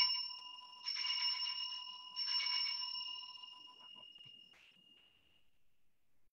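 Altar bell ringing at the elevation of the chalice after the consecration: one ring already sounding, then two more about one and two seconds in, the last fading out over about three seconds.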